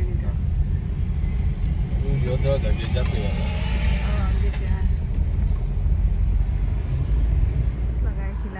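Steady low rumble of a car's engine and tyres heard inside the cabin while driving, with faint voices about two to three seconds in.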